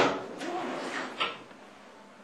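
A sharp knock at the start, then a fainter knock just over a second in, against low classroom room noise.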